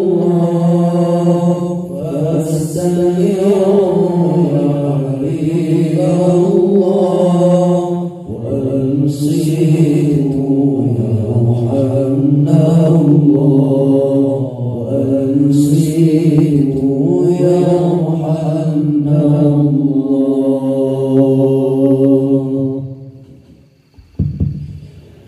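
A group of men chanting sholawat (Arabic devotional praise of the Prophet) together through microphones, in long held, gliding vocal lines with no drums. The chant dies away near the end.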